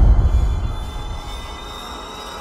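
Horror soundtrack: the rumbling tail of a loud low impact fading away in the first second, under a thin, high-pitched whine that holds steady.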